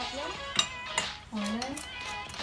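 Two sharp metallic clinks about half a second apart, from a long steel pipe and socket working against a scooter's rear axle nut as it is levered to loosen it.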